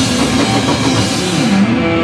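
Heavy metal band playing live: electric guitar and bass riffing over a drum kit, loud and dense.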